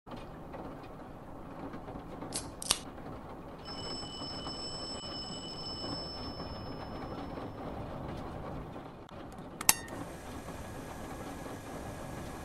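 Steady low hiss with a few sharp clicks: two close together about two and a half seconds in and one near ten seconds. A faint high whine runs for about three seconds in the middle.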